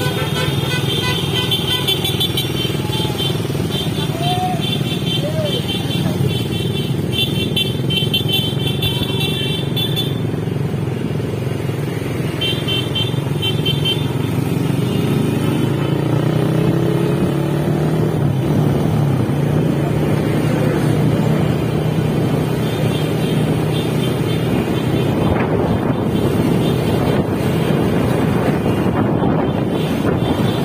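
Motorcycle engine running steadily while riding in a group of motorcycles, its pitch rising around the middle as it speeds up. Horns beep in repeated short toots through the first ten seconds and again briefly a little later.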